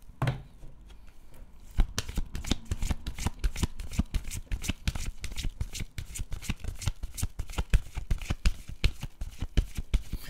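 A deck of tarot cards being shuffled by hand: a rapid, irregular run of card flicks and slaps that starts about two seconds in.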